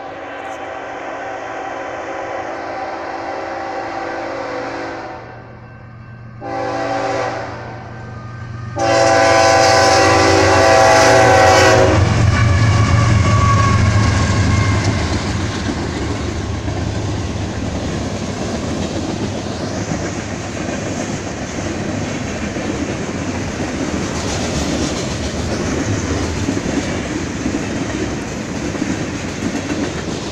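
BNSF freight train's locomotive horn sounding for a grade crossing: a long blast, a short one and a loud long one, the last ending about twelve seconds in. After the horn the train rolls through the crossing with a loud, steady rumble of freight cars passing on the main track.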